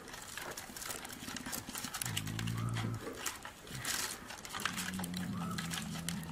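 Brown bear cubs climbing pine trunks: claws scraping and scratching on the bark in scattered clicks. Two low, drawn-out pitched sounds come in, one about two seconds in lasting about a second, and a longer one near the end.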